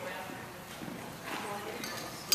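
Indistinct background chatter of people talking at a distance, echoing in a large gym hall, with faint light knocks.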